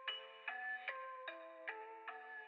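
A music-box-style bell melody from a melodic trap instrumental, playing alone and quietly with no drums or bass, a new note or chord struck about every 0.4 s.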